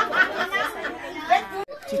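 Several people chatting at once, with a brief break near the end.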